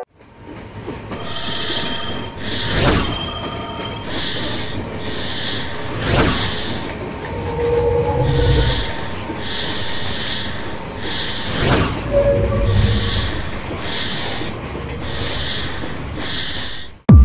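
Sound design for an animated outro: a steady run of high swishing noise pulses, about one a second, with low rumbles beneath and three whooshes about 3, 6 and 12 seconds in as graphics slide on screen.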